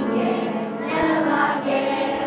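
Children's choir singing with musical backing, in long held notes.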